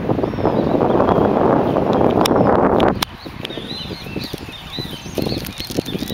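Wind buffeting the microphone in a loud rush for about the first three seconds, stopping abruptly. After it, small birds chirp in quick, rising and falling calls.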